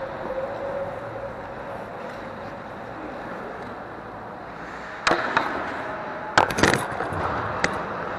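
A steady hiss of rink background, then about five seconds in a sharp knock, a quick cluster of knocks and clatter around six and a half seconds, and one more knock near the end, all close to the microphone.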